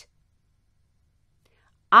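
Near silence: a pause between two spoken lines, with the voice starting again near the end.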